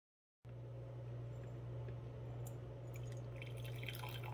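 A moment of silence, then a steady low hum; from about three seconds in, hot coffee starts trickling from a stainless 12-volt kettle into a ceramic mug.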